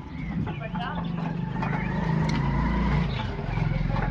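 Old stationary diesel engine with a heavy flywheel being hand-cranked, turning over with a low, steady drone that grows louder over the first three seconds as it spins up.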